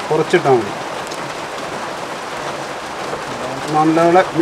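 Caramelizing sugar syrup with almonds in a frying pan, sizzling steadily. A woman's voice talks briefly at the start and again near the end.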